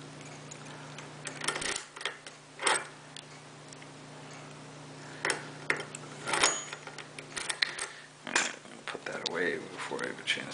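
Scattered sharp metallic clicks and clinks, about a dozen spread unevenly and busier near the end, from a key ring and a small-format interchangeable lock core being handled as its control key is tried.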